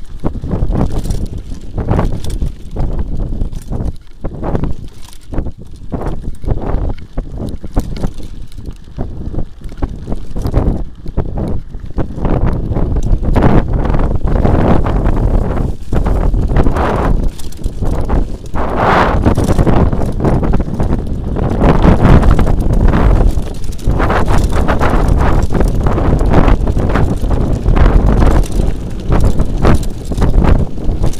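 Mountain bike riding fast down a bumpy dirt forest trail: tyres and wind on the microphone make a heavy low rumble, with constant rattling and knocking from the bike over the bumps. It grows louder about halfway through.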